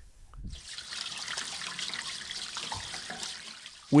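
Water pouring from a hose into a livestock water tank: a steady splashing rush that starts about half a second in and dies away just before the end.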